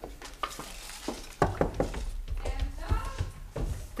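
China teacups and a teapot clinking and rattling on a tray, a series of short sharp knocks, with low thuds of people moving about.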